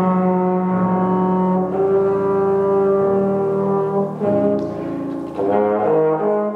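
Trombone playing slow, sustained notes with piano accompaniment. A long note is held for about two seconds in the middle, the playing drops softer for a moment, and then louder notes come in near the end.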